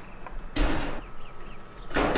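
Clear plastic filter housing of an RO/DI unit being unscrewed and pulled off: two short rasps of plastic rubbing on plastic, one about half a second in and one near the end.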